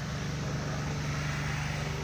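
A motor running steadily, giving a low, even hum over a background hiss.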